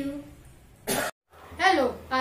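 A single short cough about a second in, just after a girl's sung note fades out. It is followed by a moment of dead silence and then a boy starting to speak.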